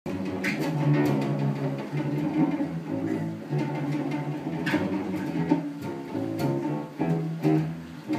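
Contrabass balalaika played solo, a run of plucked bass notes changing about every half second to a second.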